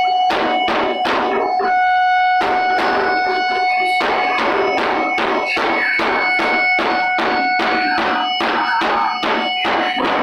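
Live noise-drone music: large drums struck with sticks in an even beat of about three strokes a second, over sustained droning tones.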